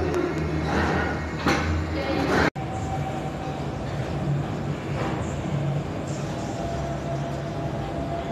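Steady low rumble of gym room noise, with faint voices and a couple of sharp knocks in the first two seconds. The sound cuts out for an instant about two and a half seconds in, then the steady rumble carries on.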